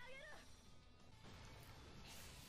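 Near silence: the anime's soundtrack is heard very faintly. A high character's voice fades out in the first half second, then there is only a faint hiss.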